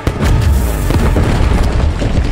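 A sudden loud crack right at the start, followed by a long, deep rumbling boom, over the show's music score.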